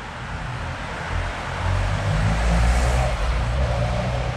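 Cars driving past on the street: engine and tyre noise swells to a peak a little before the end, then eases slightly.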